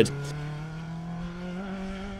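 Ford Escort RS 1800 rally car's four-cylinder engine pulling away under acceleration, its note rising steadily and then levelling off near the end.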